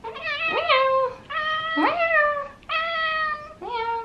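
Domestic cat meowing in a chatty string of about four long meows, some gliding up and down in pitch.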